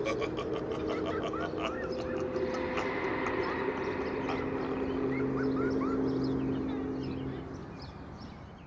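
Eerie ambience under the end card: a low steady drone with scattered short chirping calls over it, fading out near the end.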